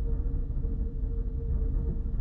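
Steady low rumble with a faint, even hum: room background noise.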